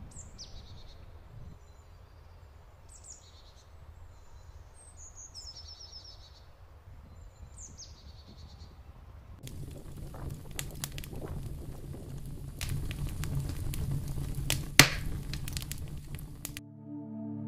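A small bird calling several times in woodland, each call a short high falling trill a couple of seconds apart, over faint ambience. About nine seconds in, a louder crackling noise full of sharp clicks takes over, with one loud snap near the end.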